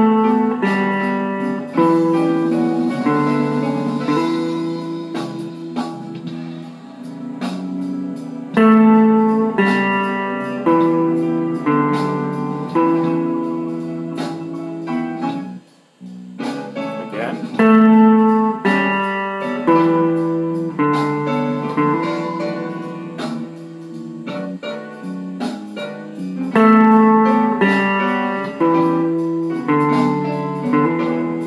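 Electric guitar, a Fender Telecaster, improvising single-note licks from the E minor pentatonic scale in open position over a slow blues backing track in E. The music cuts out almost completely for a moment about halfway through, then carries on.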